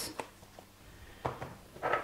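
Faint kitchen handling sounds of a teaspoon and a plastic measuring jug as salt goes into the vinegar-and-sugar brine: a light click just after the start, then two short soft scrapes in the second half.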